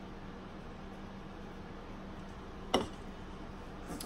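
Quiet room tone with a faint steady low hum, broken once, nearly three seconds in, by a single short sharp sound.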